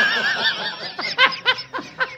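A man laughing: a long, high, wavering laugh, then a string of short laugh bursts, about five a second.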